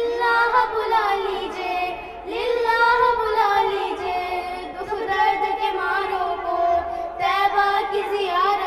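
Young girls singing an Urdu naat (devotional song) into microphones, in long held, wavering notes with brief breaths about two seconds in and near the end.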